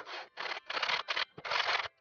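Hand saw cutting through a small block of wood in quick back-and-forth strokes, about five rasping strokes in two seconds.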